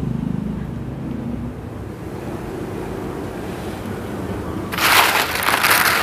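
A low motor hum fades out over the first couple of seconds. Near the end, a handful of sun-dried jengkol crackers rattles and crackles loudly as a hand stirs them on a woven bamboo tray, the dry, brittle sound of crackers that have dried crisp.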